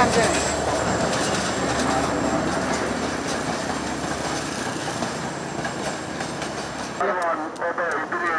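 Passenger train hauled by a diesel locomotive running along the track: a steady noise of wheels on rail. It cuts off suddenly about seven seconds in, and a voice follows.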